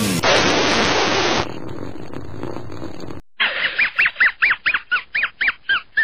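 A loud burst of hissing noise, then a quieter hiss. After a short break comes a quick run of high squeaks, about four a second, each rising and falling in pitch.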